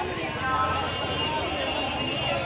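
Crowd babble: many people talking at once, a steady mix of overlapping voices with no single speaker standing out.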